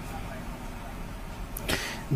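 Low, steady background noise with a faint hum from an open microphone on a remote video link, with a short burst of noise near the end.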